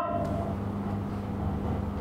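Room noise in a hall with a steady low hum, between spoken phrases at a microphone.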